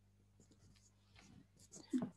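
Faint scratching and rustling over an open video-call line, then a short voice sound near the end.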